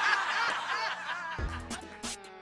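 Audience laughter dying away after a punchline. About one and a half seconds in, music with a low bass starts.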